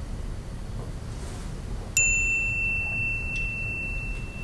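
A single bright bell-like ding about halfway through, its clear tone ringing on and slowly fading; before it, only low room noise.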